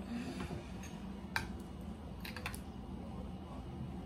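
A few light clicks of a metal spoon against a ceramic bowl and plate while green chutney is scooped: one sharp click about a third of the way in, then two or three close together a little past halfway, over a faint steady room hum.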